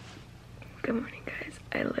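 A woman speaking quietly in a sleepy voice, just woken up.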